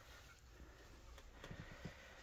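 Near silence: room tone with a faint low hum and a few soft ticks.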